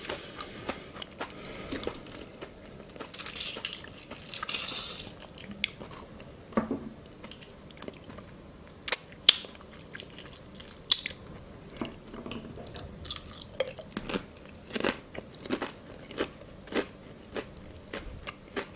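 Close-up chewing and crunching of crisp spiral-cut potato chips, with sharp, irregular crunches throughout and a denser crackle about three to five seconds in.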